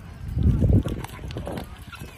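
A loud, raw shout about half a second in, lasting about half a second.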